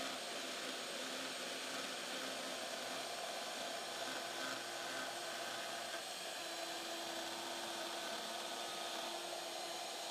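Shaper Origin handheld CNC router's spindle running at speed setting 4, cutting a pocket in wood with a 16 mm pocketing bit: a steady whirring noise. A low steady tone joins it about six and a half seconds in.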